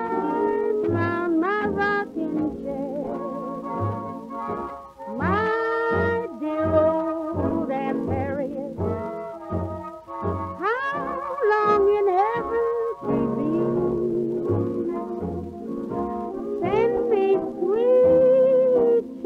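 Swing-era dance orchestra playing from an old Columbia 78 rpm record: a passage led by brass, with sliding, swooping notes over a steady, even bass beat.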